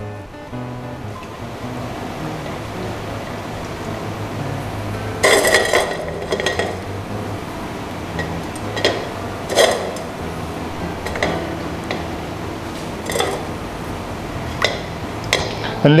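A silicone spatula scraping and knocking against a non-stick wok as oil warms in it: about eight short scrapes scattered through, the longest a third of the way in, over soft background music.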